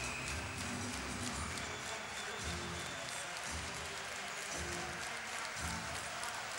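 Music over an ice-hockey arena's PA system during a stoppage in play, with a steady crowd din underneath.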